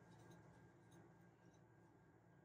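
Near silence: a faint room hum with a few soft scratchy ticks of a crochet hook pulling yarn through stitches.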